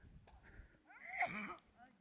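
A person's voice making a short wordless sound about a second in, gliding in pitch for about half a second.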